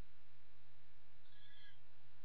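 Steady background hiss and low electrical hum of the recording, with a faint, brief high-pitched tone a little past the middle.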